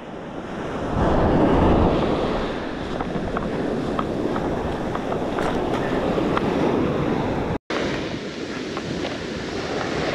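Surf washing onto the beach with wind buffeting the microphone, loudest and deepest about a second in. The sound cuts out for an instant about three-quarters of the way through.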